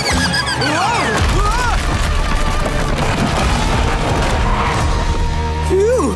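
Cartoon explosion and crash sound effects, a long rumbling blast of collapsing rubble lasting several seconds, over background music.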